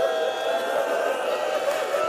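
A congregation of mourners weeping and wailing together: several voices crying in long, wavering tones.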